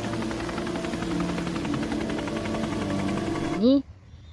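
Military helicopters flying low overhead, rotor blades beating in a fast, steady chop over engine whine. The sound cuts off abruptly shortly before the end.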